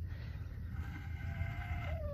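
A farm animal's faint, drawn-out call, steady in pitch and lasting most of the two seconds, over a low rumble of wind on the microphone.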